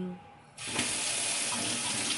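Kitchen sink tap turned on about half a second in, then water running steadily from the faucet as an orange is rinsed under the stream.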